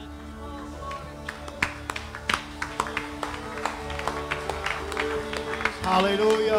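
Live worship band music: sustained keyboard chords held steady, joined from about a second and a half in by scattered sharp hits.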